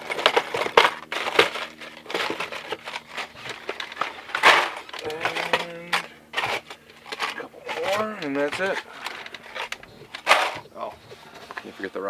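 Packaged trolling spoons being handled: plastic packs crinkling and clacking in a quick run of sharp clicks and rustles, with a short bit of voice about eight seconds in.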